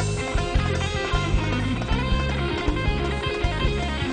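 Live band playing an instrumental passage, an electric guitar carrying a lead line over bass and drums.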